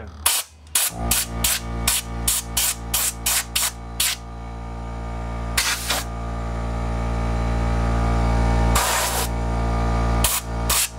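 Compressed air from a blow gun fired in quick short bursts, then in two longer blasts, over the steady hum of an air compressor's motor. The motor starts about a second in and grows gradually louder.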